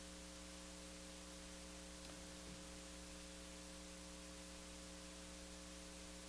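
Faint, steady electrical mains hum: several constant low tones over a light hiss from the sound or recording system, with no other sound.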